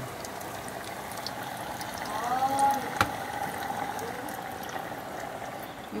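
Hot oil sizzling and bubbling steadily in a pot of frying cassava, with one sharp click about three seconds in.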